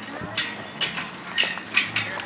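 Footsteps on a dry dirt path: four short scuffing steps, about two a second.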